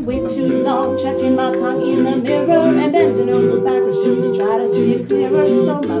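Mixed-voice a cappella group singing wordless held harmonies over a moving bass line, with a steady beat of short high ticks on top. A lead voice begins the next sung line at the very end.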